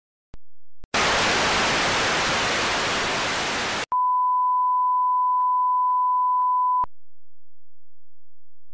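Television static hiss for about three seconds, cut off by a steady test-pattern tone: one pure, high beep held for about three seconds with three faint ticks in it, which then stops suddenly.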